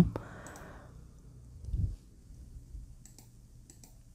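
A few faint computer mouse clicks, most of them near the end, with one low thump a little before halfway.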